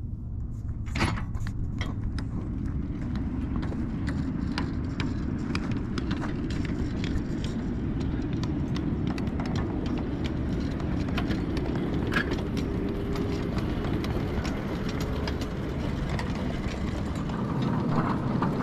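Ride-on scale freight train rolling along its narrow-gauge track: a steady low rumble of wheels on rail, with scattered irregular clicks and clacks.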